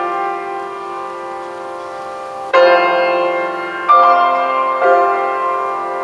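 Grand piano playing slow chords: one chord rings and slowly fades, then new chords are struck about two and a half, four and five seconds in, each left to ring out.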